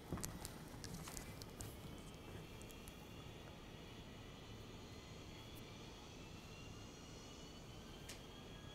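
Faint jet airliner engine noise played back over lecture-hall speakers: a steady hiss with a thin whine slowly rising in pitch. A few sharp clicks come in the first couple of seconds.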